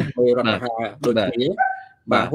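A man's voice speaking in a video-call talk show, with no other clear sound.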